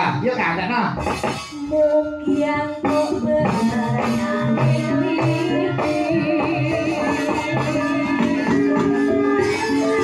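Javanese gamelan music starting about a second in: regular drum strokes over sustained bronze kettle-gong and metallophone tones. A female singer's wavering voice joins over it from about the middle.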